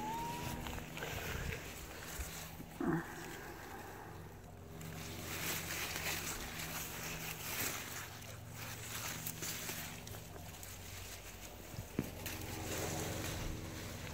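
Leafy garden plants rustling as a hand pushes in among them, in uneven swells of soft noise, over a faint steady low hum.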